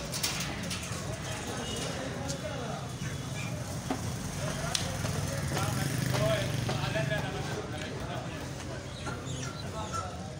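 Faint background chatter of voices over a steady low hum, with a few sharp clicks from the boning knife on the wooden chopping block.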